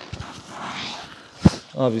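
A person doing a shoulder roll on a wooden floor: a soft rustle of clothing and body sliding over the boards, then a single sharp thump of the landing about one and a half seconds in.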